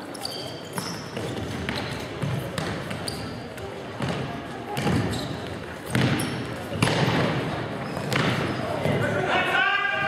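Futsal ball being kicked and bouncing on a wooden hall floor, sharp thuds echoing in a large sports hall, with players' shouts and a loud shout near the end.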